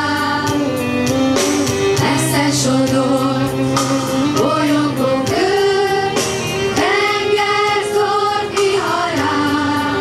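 Children's school choir singing a slow song, holding long notes.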